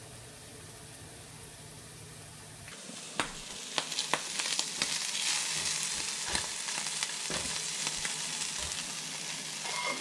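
Chopped smoked salmon and green onion frying in a nonstick pan, sizzling, with a silicone spatula stirring and scraping and a scatter of small clicks against the pan. The sizzling starts abruptly about three seconds in; before that there is only a faint steady hum.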